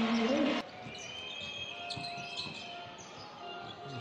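Indoor basketball arena sound: low crowd noise with a ball bouncing on the court.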